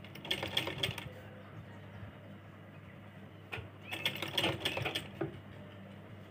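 DEEPA sewing machine stitching in two short runs of about a second each, a fast clatter of needle strokes.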